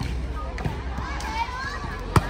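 A volleyball struck by hands in a rally, heard as a sharp slap at the start and a couple of fainter hits about half a second in, over spectators' chatter and shouts.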